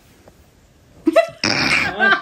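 A single sneeze about a second in: a short voiced catch, then a breathy burst lasting about half a second.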